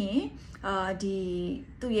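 A woman speaking, with one syllable drawn out at a steady pitch for about a second in the middle.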